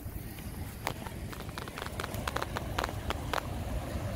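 Footsteps on dry grass and dirt: a series of light, irregular clicks over a low rumble.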